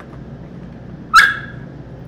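A dog gives one short, sharp, high squeak about a second in, loud and quickly fading: the squeak of a dog that wants its toy.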